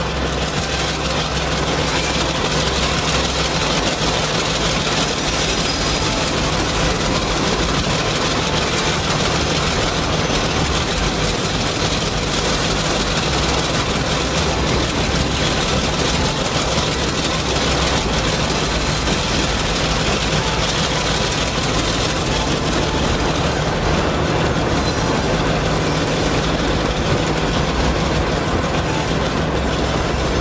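Diesel switcher locomotive engine running steadily: a constant low drone that holds the same pitch throughout, the sound of the HO scale number 5 switcher pulling freight cars.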